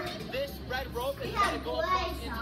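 Several children's high-pitched voices talking and calling out over one another; no words come through clearly.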